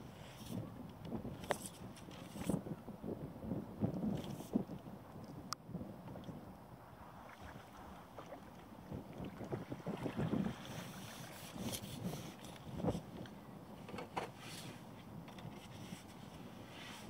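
Wind gusting on the microphone, with water splashing as a hooked fish is played and netted from the bank, and a few sharp clicks along the way.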